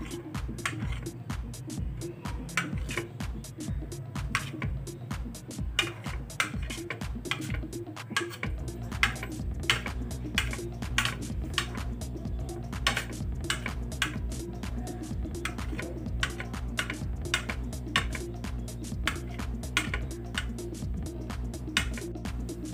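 A kitchen knife chopping boiled eggs on a plate: quick, irregular taps and clicks of the blade striking the plate. Background music with a low pulsing beat plays underneath.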